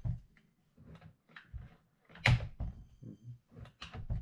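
Plastic clicks and knocks from a steam mop's swivelling head and handle joint being turned from side to side against a tabletop, with one louder knock a little past the middle.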